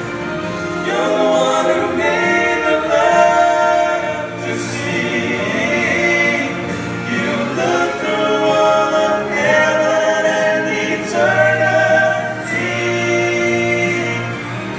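Three men singing a gospel song in close harmony through handheld microphones, holding long notes in phrases a few seconds long.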